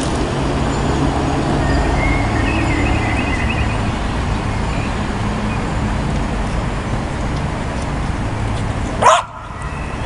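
Steady traffic rumble, with a few short, high yips from a small dog about two to three seconds in. A sharp, loud burst comes near the end.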